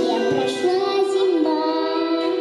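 A young girl singing into a handheld microphone over instrumental accompaniment, her voice moving between held notes.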